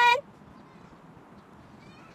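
A woman's voice finishing a short spoken word with a gliding pitch right at the start, then only faint, steady outdoor background noise.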